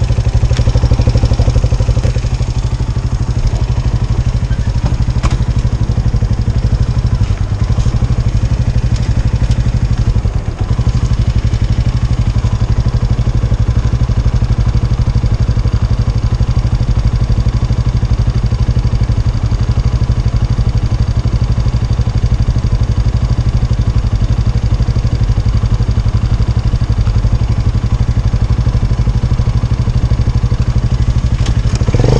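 Motor scooter engine idling steadily, with a few faint clicks early on.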